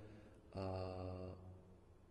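A man's drawn-out hesitation sound, a vowel "a" held at one steady pitch for about a second, then a pause.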